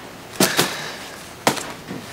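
Three sharp knocks from objects being handled and set down: two close together about half a second in, and one more about a second and a half in.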